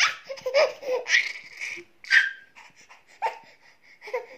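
A baby laughing in a string of short bursts, loudest near the start and again about two seconds in.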